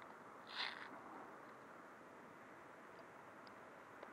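Near silence: faint outdoor background hiss, with one brief, soft, noisy rustle about half a second in.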